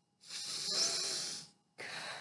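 A deep breath drawn in through an N95 respirator, hissing for about a second as air is pulled through the mask fabric during a seal check, followed by a shorter breath starting near the end.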